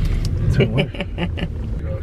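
Steady low rumble of road and engine noise heard inside the cabin of a moving car, with a short stretch of voices about half a second in.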